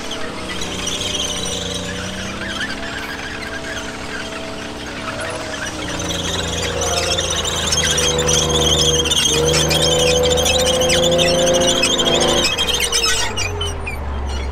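Chieftain tank driving across the arena: its Leyland L60 engine changes revs and grows louder as it comes closer, over high squealing from its steel tracks. Near the end the engine note drops sharply.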